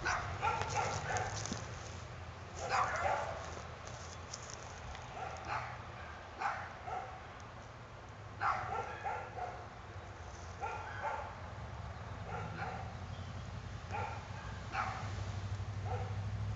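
A dog barking over and over, in short runs of two or three barks every second or two.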